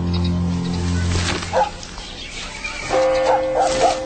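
A low, sustained music drone fades out about a second and a half in. Short dog barks follow, one and then a quick run of three near the end.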